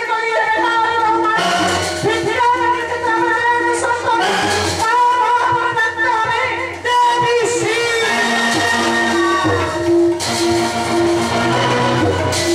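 Singing with instrumental accompaniment, a Manasar gan devotional song to the goddess Manasa: a wavering solo voice over repeating sustained bass notes.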